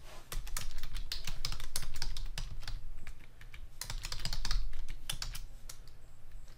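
Computer keyboard typing, fast irregular key clicks in two quick runs with a short pause between, as an address is keyed into a web form.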